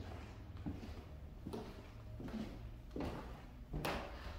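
Footsteps on bare old wooden floorboards in an empty room: about five steps at a slow walking pace, the last the loudest.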